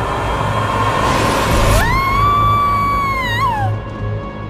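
Suspenseful horror-style film score: a low pulsing drone under a rushing swell that builds for about two seconds, then a single high tone that rises, holds, wavers and slides down, dying away near the end.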